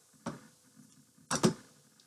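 Two short clicks from hands handling craft materials on a tabletop: a faint one near the start and a louder one a little past halfway.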